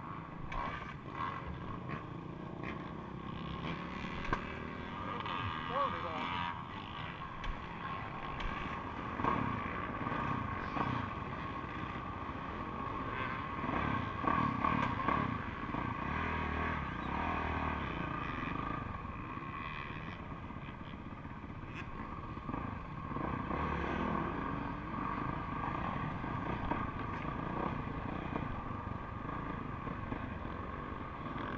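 Motocross bike engine running at low revs under the rider, with other dirt bikes running and revving nearby.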